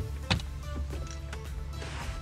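A 12-volt power plug pushed into a car's cigarette-lighter socket: two sharp clicks right at the start, over soft background music.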